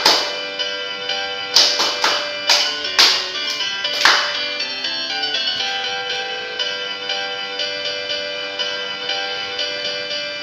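A recorded folk-dance tune plays throughout. Over it come sharp hand claps from the dancers: a loud one at the very start, then a quick run of claps between about one and a half and four seconds in, after which only the music continues.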